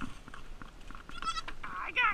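Goat kid bleating while held on its back for a lice spray treatment: a wavering, high cry about a second in, then a louder, falling bleat near the end.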